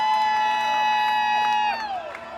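A live band's loud sustained high-pitched note, several steady tones held together for about two seconds, then sliding down in pitch near the end, with a crowd cheering underneath.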